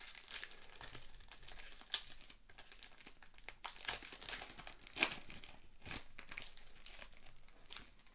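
Silvery foil wrapper of a hockey card pack being torn open and peeled back by hand: irregular crinkling and crackling of the foil, with a sharper snap about five seconds in.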